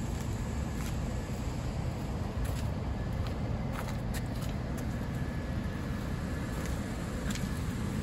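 Steady low rumble of outdoor background noise, with a few faint clicks and shuffling steps as a person moves around the parked machine.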